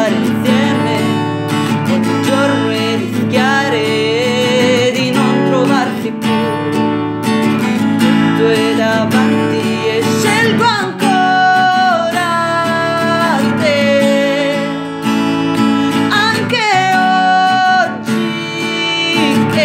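Acoustic guitar strummed and picked, with a woman's voice singing long held notes that slide and step between pitches over it.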